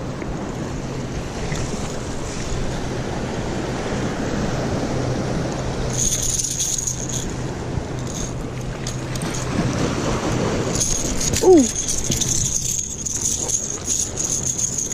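The internal rattles of a blue-and-silver Rat-L-Trap lipless crankbait shake as the hooked fish flops on the concrete and is worked off the hook. The rattling comes in spells about six seconds in and again from about eleven seconds, over steady surf and wind.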